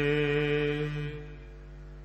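A man's voice chanting Gurbani, holding the last note of a line on one steady pitch, which fades about a second in to a faint sustained tone.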